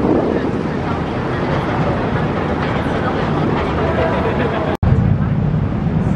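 Steady noise of a moving harbour ferry, its engine running with wind on the microphone. A cut about five seconds in brings a deeper, heavier rumble.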